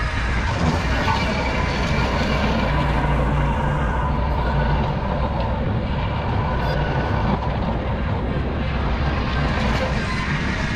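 Ventrac compact tractor running steadily with its Tough Cut brush-cutter deck, a constant low engine hum as the machine moves back and forth at a stand of brush.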